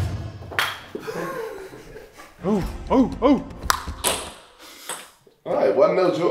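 Table-tennis ball clicking sharply off paddle and table a few times in a short rally. A voice calls out three times in the middle.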